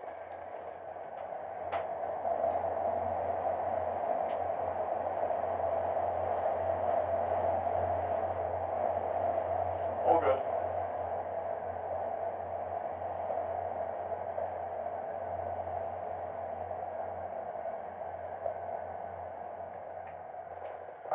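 Human centrifuge heard from inside its gondola during a 3.2 G run: a steady rushing noise over a low hum builds about two seconds in as the arm spins up. It holds, with one short sharp sound near the middle, then eases off toward the end as the centrifuge slows.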